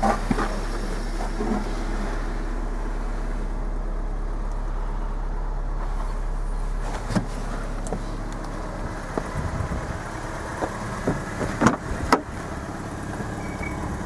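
Steady low hum of a 2013 Ford Fiesta's 1.6-litre four-cylinder engine idling, heard from inside the cabin. In the later part there are scattered handling clicks and two sharp knocks close together.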